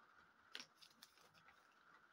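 Near silence with a few faint clicks of tiny plastic parts being handled, the clearest about half a second in.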